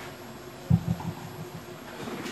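A muffled low thump a third of the way in, followed by a few softer ones, over a faint steady hum.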